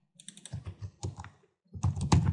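Computer keyboard typing: a run of irregular keystrokes, louder near the end.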